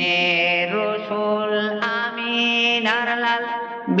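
Devotional song: a long, ornamented sung phrase of held and gliding notes over a steady sustained accompaniment.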